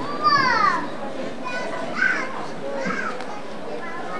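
Children's voices at play: one loud, high squeal that falls in pitch in the first second, then a few shorter high calls.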